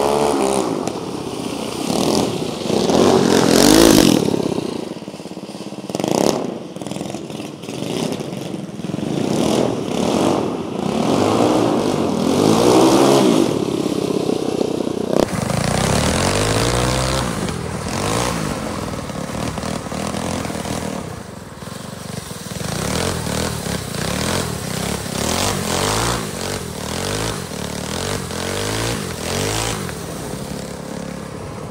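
Small gas drift-kart engine revving up and down again and again through the slides, over the hiss of plastic HDPE sleeves sliding on concrete.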